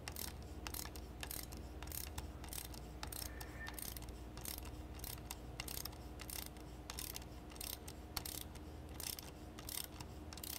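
Ratchet wrench clicking in quick, uneven runs of clicks as it is worked back and forth, loosening the quad-ring clamp bolt of an aircraft integrated drive generator.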